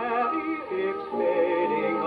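Dance band playing a waltz medley of Irish melodies, reproduced from a 78 rpm disc on an HMV 163 acoustic horn gramophone. Sustained, wavering melody notes with little treble.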